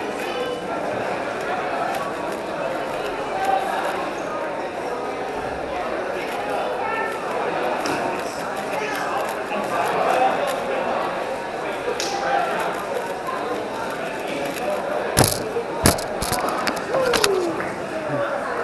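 Indistinct chatter of many people in a large hall, steady throughout, with a few sharp knocks about three-quarters of the way through.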